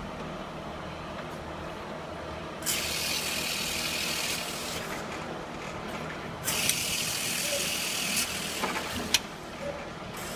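Projectile tube-cleaning gun firing twice: two hissing pressure blasts of nearly two seconds each as cleaners are shot through condenser tubes, over a steady hum of plant machinery. A sharp click comes near the end.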